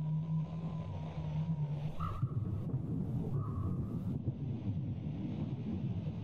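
Low, steady rumbling drone. A hum gives way to a rougher rumble about two seconds in, with a few faint higher tones over it.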